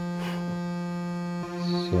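Arturia MicroFreak synthesizer holding one steady, bright note rich in overtones, its tone shifting slightly about a second and a half in.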